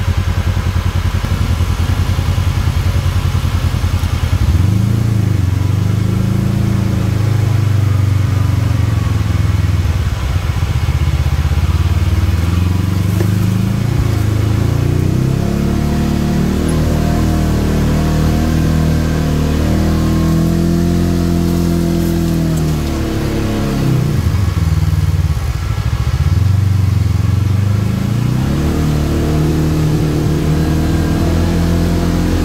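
Side-by-side UTV engine heard from inside the open cab while driving a dirt trail. It runs with a low, pulsing note for the first few seconds, then its pitch climbs and rises and falls with the throttle, dropping sharply and picking up again about three quarters of the way in.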